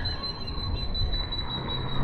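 Birds calling over quiet town-street ambience, with a thin steady high tone that holds one pitch and stops at the end.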